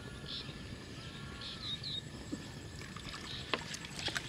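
Quiet outdoor ambience: a faint low rumble with a few faint, short high chirps and a couple of soft knocks, the clearest about three and a half seconds in.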